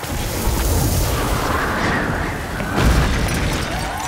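Layered film sound-effect booms and blasts with a deep rumble under a rushing noise, surging about half a second in and loudest just before three seconds in, as superpowers meet incoming meteors.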